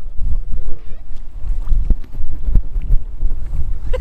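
Strong wind buffeting the microphone: a loud, gusting low rumble, with a faint voice under it in the first second.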